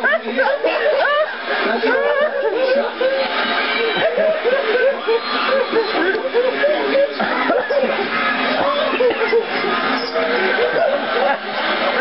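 Several voices talking over one another, mixed with snickering and laughter.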